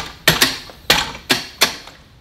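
Kuat Piston Pro X hitch bike rack's arms being flipped up and clicking into place: four sharp metal clacks within about a second and a half.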